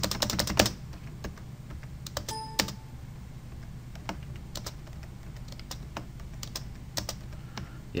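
Clicking at a computer as checkboxes are ticked one by one: a fast run of clicks at the start, then single clicks spaced through the rest. A brief pitched tone sounds about two and a half seconds in, over a steady low hum.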